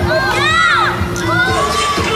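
Children shouting at play, several high voices overlapping in yells that rise and fall in pitch.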